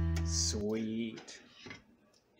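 An acoustic guitar chord rings out and cuts off about half a second in. A brief voice follows, then a few faint knocks.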